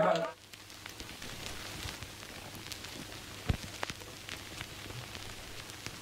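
The bluegrass string band's final strummed chord cuts off just after the start, leaving faint hiss scattered with small crackles and clicks and one duller knock about three and a half seconds in.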